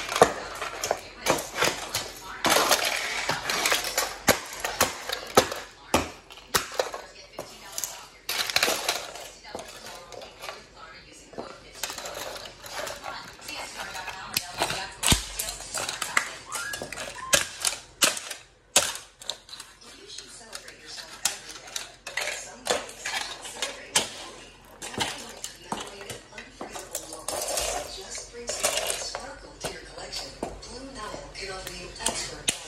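Plastic model cars cracking and crunching under platform high heels stomping on a wooden floor, a long run of sharp cracks and snaps with broken pieces clattering.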